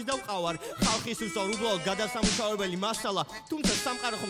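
Hip-hop track: a rapped vocal line over a sparse beat with a few sharp percussion hits and no bass.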